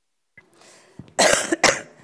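A person coughing twice in quick succession, just over a second in, the second cough close behind the first.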